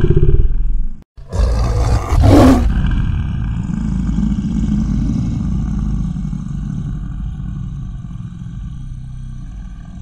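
Cinematic logo-reveal sound effect: a deep rumbling hit that breaks off about a second in, then a second hit with a whoosh falling in pitch, settling into a low rumble that slowly fades.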